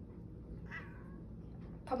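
Domestic cat giving one short meow that falls in pitch, about a second in, which the owner takes as asking for food.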